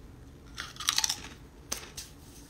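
A person biting into and chewing a crunchy snack: a quick run of loud crunches about half a second to a second in, then one more crunch near the end.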